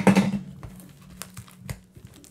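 A cardboard trading-card blaster box handled on a tabletop: a loud knock and rustle at the start, a low hum under it that fades out, then a couple of light clicks near the end.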